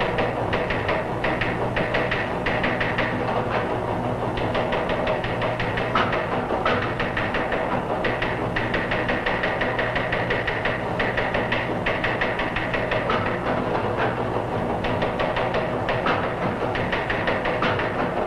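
Teletype machine clattering rapidly and evenly as it prints, heard through an old film soundtrack, with dramatic music under it.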